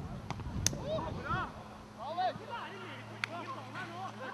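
Footballers' shouts carrying across an open pitch, short rising-and-falling calls coming one after another, with a few sharp knocks, the loudest about two-thirds of a second in.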